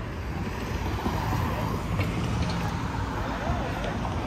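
Street ambience: car traffic running along the road with a steady low rumble, and people's voices nearby, clearest in the second half.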